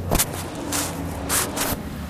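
A man pushing up from an exercise mat into a push-up: a sharp tap just after the start, then a few short puffs of breath.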